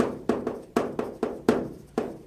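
Chalk tapping and scraping on a chalkboard while writing characters, a quick run of sharp taps about four a second.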